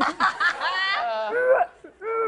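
A woman laughing: quick snickering bursts, then a longer high-pitched laugh that sweeps up and falls away, dying out near the end.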